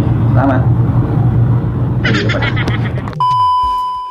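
A steady low mechanical hum under a man's voice; about three seconds in it cuts off abruptly and a steady electronic beep tone takes over for about a second, with a low tone sliding down beneath it.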